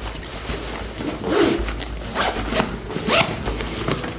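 Zipper on a fabric backpack being pulled in several short strokes while clothes are packed into it.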